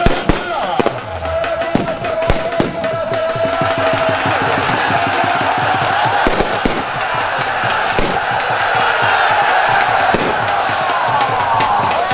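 Music with a held melody line and irregular sharp percussive strokes, over the noise of a large crowd shouting, which grows denser from about a third of the way in.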